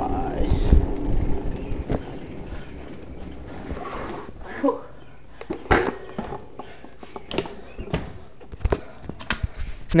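Wind rumble on a handlebar-mounted camera's microphone as a bicycle rolls in, dying away after about two seconds. Then quieter, with scattered clicks and knocks as the bike is stopped and handled.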